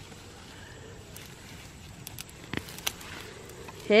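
Faint rustling of carrot foliage and soil as a carrot is pulled up by hand, with a few small sharp clicks past the middle.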